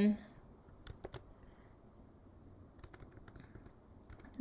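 Computer keyboard typing: a couple of key clicks about a second in, then a quicker run of keystrokes near the end as a web address is typed.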